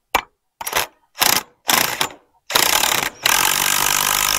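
A cordless impact driver tightening a bolt on a steel gate hinge. It runs in several short bursts, then in a longer continuous run from about two and a half seconds in, pausing briefly once.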